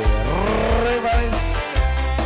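Live dangdut band music: a gliding, bending melodic line over a heavy bass and kendang drum beat.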